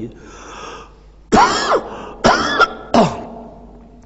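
A man coughing three times, each cough roughly a second apart, after a breath in.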